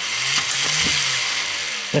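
A battery-powered walking toy spider robot's electric motor and gearbox running steadily as its legs step, a hissy mechanical whir.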